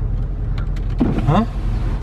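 Car engine running at idle, a steady low rumble heard from inside the cabin, with a short spoken "ha?" about a second in.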